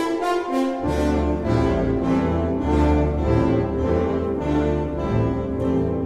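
Symphonic wind band playing, with brass carrying held chords. A deep bass line comes in under them about a second in.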